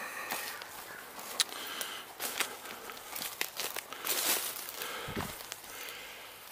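Footsteps through dry forest undergrowth: twigs, brush and leaf litter crackling and snapping irregularly underfoot, with a low thump about five seconds in.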